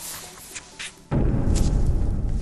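A few faint paper rustles from a notebook being opened, then about a second in a deep, low drone of dramatic background score comes in suddenly and holds.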